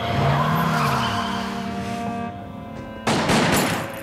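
A car engine note rising and falling, then about three seconds in a loud, rapid burst of gunfire lasting under a second, over sustained music.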